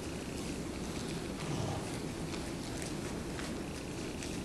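Quiet room tone: a steady low rumble and hiss, with a few faint scattered rustles and clicks.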